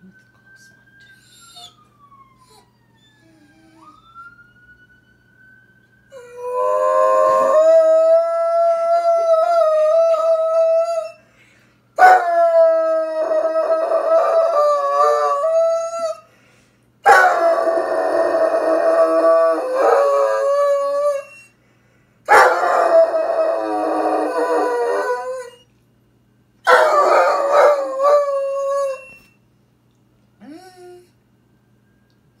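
A Doberman howling in five long, wavering howls with short breaks between them, the first starting about six seconds in, set off by a faint siren rising and falling in the first few seconds.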